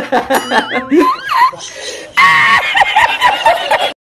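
Laughing with a wavering, rising and falling pitch for about a second and a half. Then, a little past the halfway point, a burst of harsh static-like glitch noise with a steady tone in it, which cuts off suddenly at the end.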